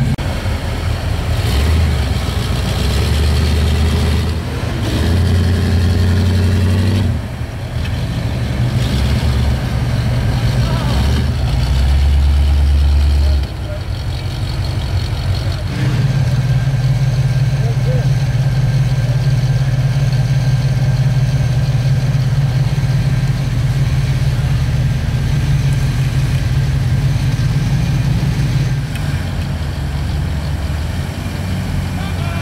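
Off-road Jeep engine running under load, its pitch rising and falling in spells as it is revved and eased off, with a long steady stretch in the second half.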